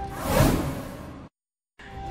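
A whoosh transition sound effect swells and fades over background music, followed by a sudden half-second of dead silence near the end.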